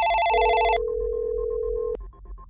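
Telephone sound effect within an electronic dance track: a trilling electronic phone ring for about a second, overlapped by a steady lower tone that cuts off with a click near the end, over a faint beat.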